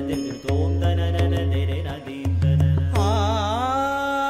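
Devotional background music: a deep steady drone under pitched notes and sharp percussive taps, with a wavering melodic line coming in about three seconds in and settling on a held note.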